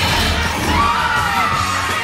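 Loud rock music from the ride's soundtrack, with a crowd of riders screaming and yelling over it.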